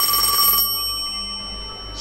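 Telephone bell ringing, inserted as a sound effect: one ring that breaks off less than a second in, its tone dying away afterwards.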